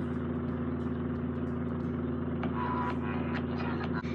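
A steady low hum made of several even tones, unchanging throughout, under faint room noise.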